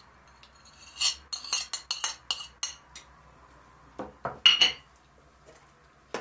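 Cutlery clinking and scraping against a china saucer as grated cheese is knocked off it into a mixing bowl. There is a quick run of light clicks, then a louder, ringing clink about four and a half seconds in.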